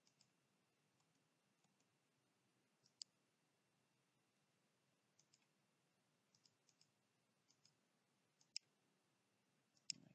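Faint, sparse clicks of a computer mouse button over near silence, a dozen or so single and paired clicks picking points in a drawing, the loudest about three seconds in and just before nine seconds.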